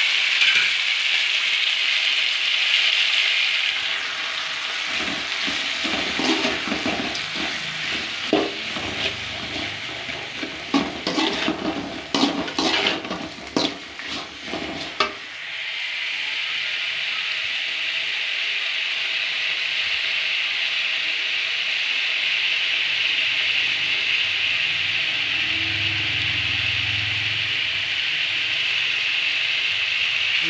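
Tomatoes, onions and dried red chillies frying in an aluminium pan with a steady sizzle. For about ten seconds in the middle, a perforated metal slotted spoon stirs them, scraping and knocking against the pan.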